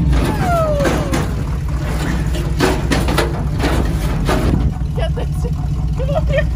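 A truck engine running steadily, with scattered sharp knocks and clanks and a few short sliding high notes over it.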